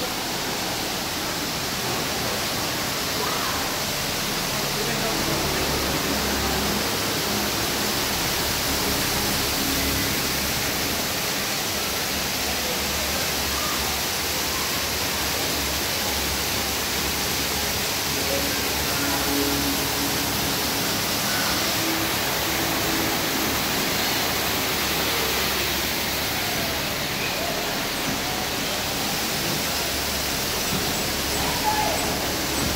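Steady rushing noise of running water from an exhibit's water features, with a crowd's voices and faint music behind it.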